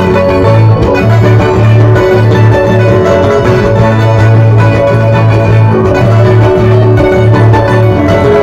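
Loud, steady Andean folk music for the Qorilazo dance, played on string instruments over a strong bass line.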